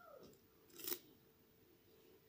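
A single sharp snip of scissors cutting thread about a second in, the loudest sound, over a faint steady hum. At the very start a cat's meow falls away in pitch.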